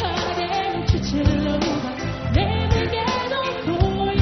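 Live Burmese pop song: a woman sings a melody that slides between notes into a microphone over a full band, with a steady drum beat.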